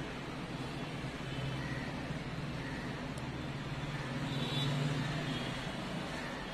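Steady low rumble of road traffic, swelling slightly about four to five seconds in, as if a vehicle passes.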